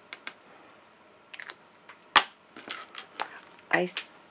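Light plastic clicks and taps from handling a small ink pad and a clear acrylic MISTI stamping tool, with one sharp click about two seconds in.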